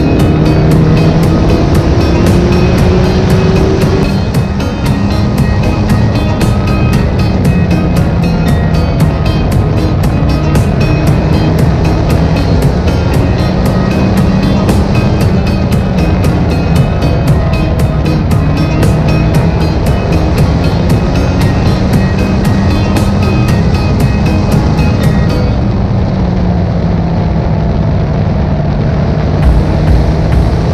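Onboard sound of a Mod 4 open-wheel race car's four-cylinder engine running hard around an oval, its drone rising and falling in pitch with the throttle through the laps, under background music with a steady beat.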